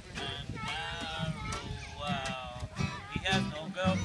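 An acoustic folk band playing: fiddle and button accordion with wavering, wobbling notes over plucked double bass and acoustic guitar.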